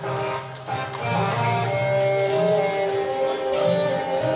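Recorded instrumental accompaniment playing through a hall's sound system: sustained notes over a pulsing bass, with no live violin yet.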